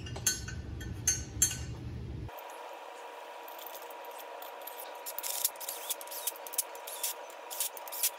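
Light metal clinks and taps of steel head bolts being set into and hand-threaded into the cylinder head of a Briggs & Stratton L-head engine. A little over two seconds in, the sound changes abruptly to a faint steady hum with scattered light ticks.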